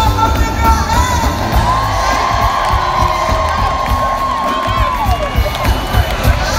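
Concert audience cheering and whooping over the live band's music, with one long high held note carried over the noise that slides down about five seconds in.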